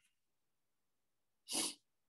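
Silence broken, about one and a half seconds in, by one short, breathy vocal sound from a person, about a quarter of a second long.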